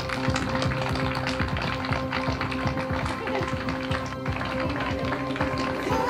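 A crowd applauding with many quick, irregular hand claps, over a steady background music track.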